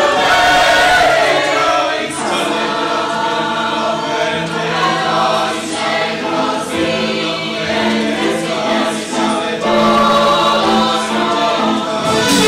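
Mixed-voice choir singing in harmony, holding long sustained chords, with a short break about two seconds in.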